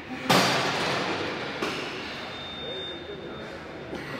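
A sudden thud followed by about a second of loud rushing noise that cuts off abruptly, then faint voices in a gym.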